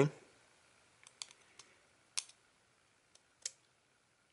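A few faint, sharp clicks and taps of fingers and fingernail working at a small flex-cable connector on a smartphone's motherboard, about six in all, spread unevenly, the clearest about two seconds in.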